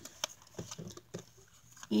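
Faint scattered clicks and taps of a small clear plastic storage container being turned over and fumbled with in the hands.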